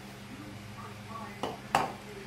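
A plastic measuring cup set down on a kitchen countertop: a light knock, then a sharper, louder knock near the end, over a steady low hum.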